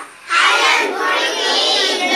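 A group of schoolchildren singing a Kannada action song loudly in unison, coming back in after a brief break about a quarter of a second in.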